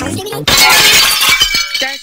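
A sudden loud shattering crash about half a second in, lasting over a second, over background music.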